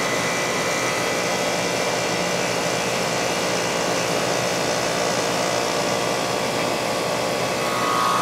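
Outdoor air-conditioning condensing unit running steadily just after start-up in cooling mode: its Copeland Compliant Scroll compressor and condenser fan, heard up close with the service panel off. A constant whirring noise with a faint steady whine, no change in speed.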